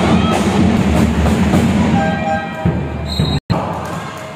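Music over an arena's sound system mixed with crowd noise in a large indoor hall. It drops in level a little past two seconds in and cuts out abruptly near the end at an edit, then comes back quieter.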